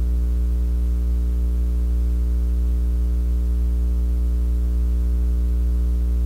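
Steady electrical mains hum, a low buzz with even overtones above it and a faint hiss, unchanging throughout.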